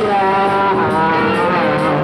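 Live rock band playing loudly: long held electric guitar notes that bend slowly in pitch, over bass and cymbals.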